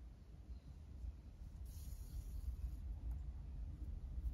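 Faint rustle of cotton yarn being drawn through knitted fabric with a tapestry needle, a soft hiss about a second and a half in, over a low steady room hum.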